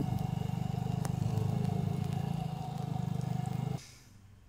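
Motor scooter engine running steadily as it is ridden, with a fast even pulse, cutting off suddenly near the end.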